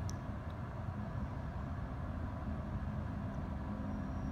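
Steady low background rumble, with no distinct events.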